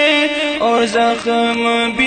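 A man's voice chanting an Urdu naat in a drawn-out melodic line with no clear words, holding long notes and stepping down to a lower held note partway through.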